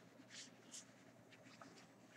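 A few faint, brief scratches of a pen on paper, the clearest two close together within the first second and smaller ones later.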